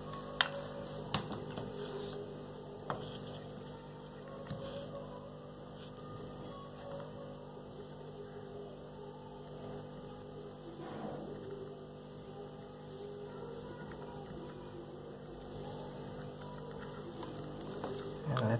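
Steady low electrical hum, with a few faint clicks and light scraping as a metal screwdriver tip is twisted in small holes in a plastic tube to clear the burrs.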